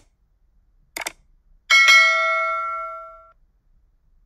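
Subscribe-button animation sound effects: a quick double mouse click about a second in, then a bright notification bell chime that rings for about a second and a half and dies away.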